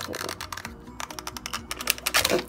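Plastic-and-card toy blister pack being pushed and torn open by hand: a quick run of small crackles and clicks.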